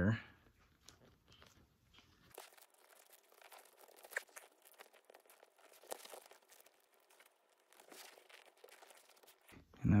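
Faint crackling with scattered small ticks as very sticky double-sided mounting tape is unwound from its roll and pressed down onto a nylon flap along the edge of a vinyl-and-canvas panel.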